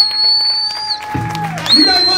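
Live blues band playing: an electric guitar holds long sustained notes while a bass comes in with a low held note partway through.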